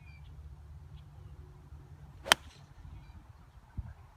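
A long iron striking a golf ball off the tee: one crisp, sharp strike a little past halfway through, over a low steady rumble.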